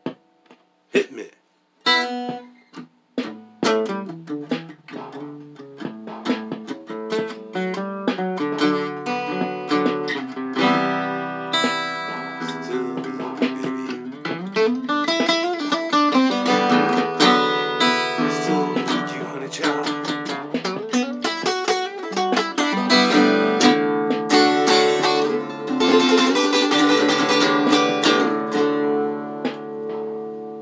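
Acoustic guitar being played: a few sparse single plucks at first, then continuous picked notes and chords, with some notes gliding in pitch around the middle.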